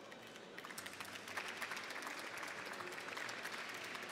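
Audience applauding. It begins with scattered claps about half a second in and fills out into steady applause within a second.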